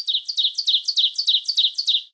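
A rapid, high bird-like chirping trill of about six short notes a second, each note falling in pitch, stopping near the end.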